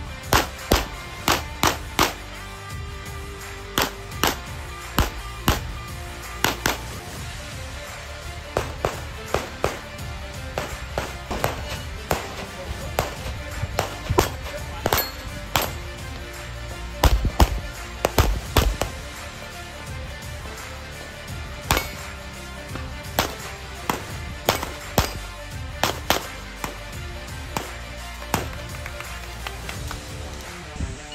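Pistol shots from 9 mm single-stack handguns fired in quick strings of sharp cracks with short pauses between them, over background music. The loudest run of shots comes a little past halfway.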